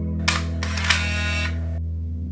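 SLR camera shutter and film-advance sound, used as a transition effect: a sharp click, a burst of mechanical whirring about a second and a half long, and a second click about half a second after the first. It plays over a sustained ambient music drone.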